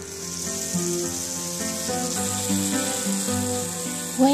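Vegetables with tomatoes and spices frying in oil in a pan, a steady sizzling hiss. Soft background music with held notes plays over it.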